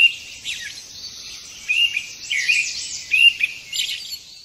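Small birds chirping and singing, several short high whistled calls over a steady high hiss.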